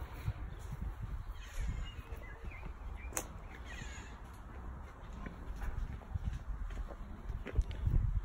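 Wind rumbling on a phone's microphone while walking over garden soil, with faint footsteps and a sharp click about three seconds in. A few faint bird calls sound in the background.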